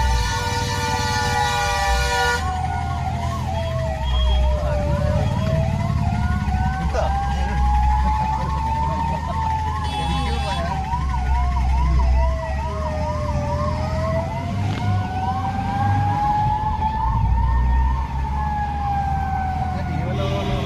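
Kerala fire engine sirens in traffic. A slow wail rises and falls about every four to five seconds, and from about two seconds in a fast warbling yelp runs over it, above the low rumble of idling traffic. A steady chord of several tones sounds for the first two seconds and again briefly near the middle.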